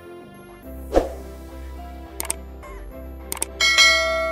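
Background music with the sound effects of a subscribe-button animation: a whoosh about a second in, two short mouse clicks, then a bright bell chime near the end that rings on.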